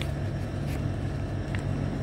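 Steady low background rumble, with a few faint clicks.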